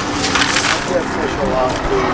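A landing net sweeping through ice and water in a cooler: a short burst of ice rattling and water splashing about half a second in.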